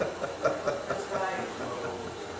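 Speech only: a man talking, with no other sound standing out.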